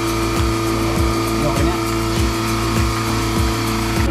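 Portable dual-bucket milking machine running while milking a water buffalo: a steady hum from the vacuum pump with a rhythmic pulsing about twice a second from the pulsator as the teat cups draw milk.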